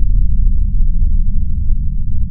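Deep rumble from a logo intro sound effect, with scattered light crackles over it, slowly fading.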